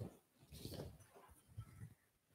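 Near silence: room tone with a few faint, short low sounds.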